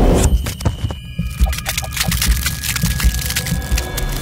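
Logo-animation sound effect: a heavy, low pulsing rumble overlaid with a dense run of sharp crackling clicks and a couple of steady high ringing tones.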